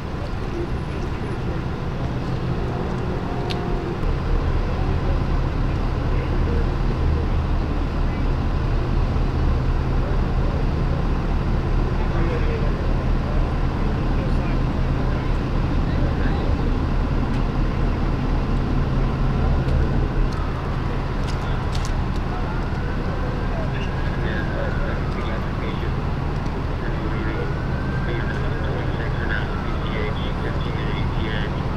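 Idling diesel engines of fire apparatus giving a steady low rumble, with indistinct voices of crews mixed in.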